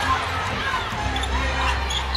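Basketball arena game sound: a basketball dribbled on a hardwood court over crowd noise and music with a steady bass from the arena's sound system.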